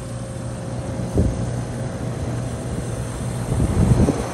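Iced-over 2019 Oxbox heat pump outdoor unit running in heat mode: a steady low hum from the fan and compressor with a faint steady tone above it. The coil is frozen and the unit is due for a defrost cycle that it is not starting, so barely any air moves through it. A brief bump about a second in and another near the end.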